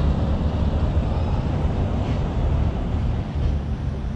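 Steady outdoor street noise with a heavy low rumble.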